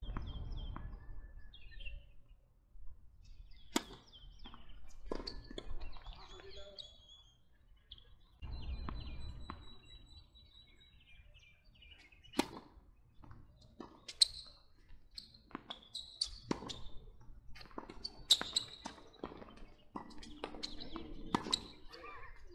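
Tennis ball struck by rackets in a doubles rally: a string of sharp pops, the loudest a serve hit about twelve seconds in. Birds chirp in the background, with some voices.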